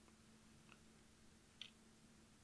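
Near silence: room tone with a faint steady hum and a brief faint click about three-quarters of the way through.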